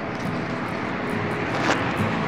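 Steady rumble of distant motor traffic, with a brief rustle near the end.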